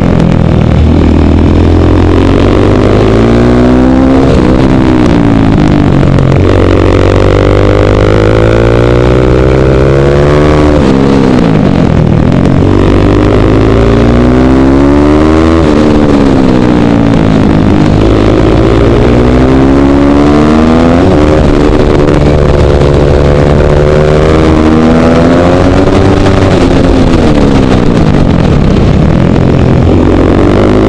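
KTM 450 SMR supermoto's single-cylinder four-stroke engine revving hard, recorded close up by a helmet camera: the pitch climbs through the gears and falls sharply about three times when the throttle is shut off.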